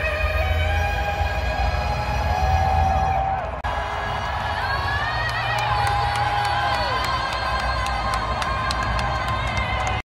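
The national anthem sung live by a woman over a stadium PA, with long held notes that glide and fall away, over a large crowd cheering and a steady deep rumble.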